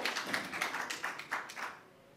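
Applause: hands clapping quickly, about six claps a second, growing weaker and dying away near the end.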